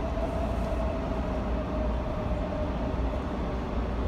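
Steady low rumbling noise, the kind heard riding in a moving vehicle, with a faint steady whine above it that fades after the first couple of seconds.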